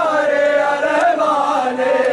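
Men's voices chanting a drawn-out mourning lament, the sung pitch sliding up and down.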